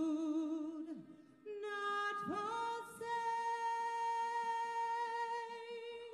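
A woman singing into a handheld microphone: a short note with vibrato, then, about two seconds in, a slide up into one long held note that fades away near the end.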